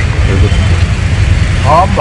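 A loud, steady low rumble, from wind on the microphone or a nearby running engine, runs under outdoor voices. A voice is heard faintly about half a second in, and speech starts again clearly near the end.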